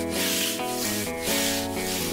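Stiff brush scrubbing a floor in repeated back-and-forth strokes, a cartoon sound effect, with soft background music underneath.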